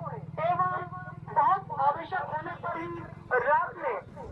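A public-address warning announcement played through horn loudspeakers on a moving electric rickshaw: a voice calling out caution to villagers, over a steady low hum. It is a safety alert about a man-eating wolf, urging people to keep children safe.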